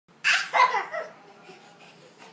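A toddler gives two loud, short shouts in quick succession, then a softer one about a second in.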